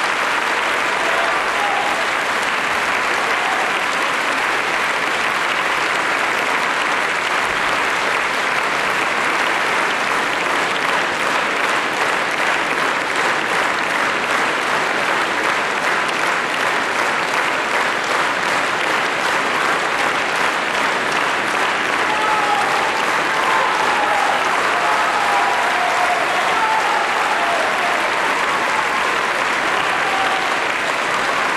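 A large concert-hall audience applauding steadily, dense even clapping at one level, with a few faint voices calling out near the end.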